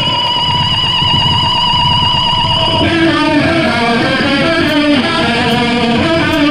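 Amplified electric guitar holding a wavering high tone for the first few seconds, then, about three seconds in, switching to a picked, changing run of notes as a song starts.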